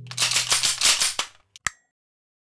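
Sound effect of several guns being cocked: a rapid clatter of metallic clicks and rattles for about a second, then one sharp click.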